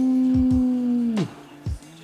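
A man's long drawn-out "ooh" exclamation, held on one steady pitch and then dropping away about a second and a quarter in. A few low thumps sit under it.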